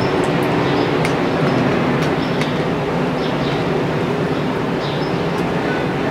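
Steady rushing background noise, even in level throughout, with a few faint sharp clicks scattered through it.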